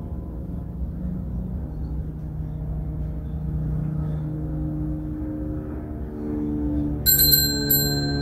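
Soft instrumental music of slow, held notes, then a small altar bell rung in two quick shakes near the end, left ringing.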